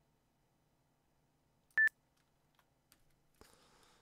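A single short electronic beep from an online interval timer about two seconds in, signalling the start of its two-minute interval. A few faint clicks follow.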